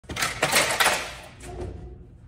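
Snack vending machine's glass-front door being pulled open: a loud clattering metal rattle with several sharp clicks in the first second, then a softer knock about a second and a half in.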